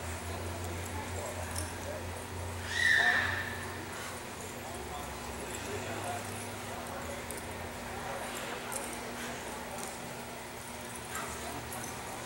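A single short, high-pitched animal call about three seconds in, gliding slightly down, over a steady low hum.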